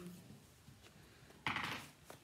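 A brief rustle and scrape about one and a half seconds in, as a hardback sketchbook is handled and brought up close to the phone's microphone.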